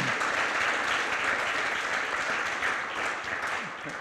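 Audience applauding: many hands clapping in a steady patter that eases slightly near the end.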